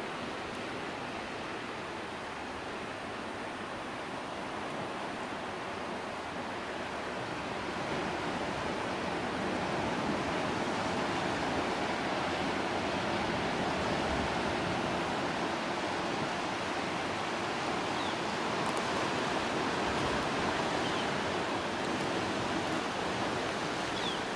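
Ocean water rushing and washing in a steady wash of noise, swelling a little about eight seconds in.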